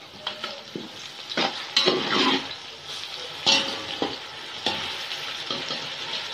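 Sliced onions and ginger-garlic paste sizzling as they fry in ghee, while a slotted metal spatula stirs them and scrapes the bottom of a large metal pot in about four strokes.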